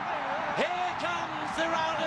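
A television football commentator's voice over the steady noise of a stadium crowd as a goal goes in.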